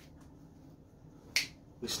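A single finger snap: one sharp crack about one and a half seconds in, with faint ticks just before it.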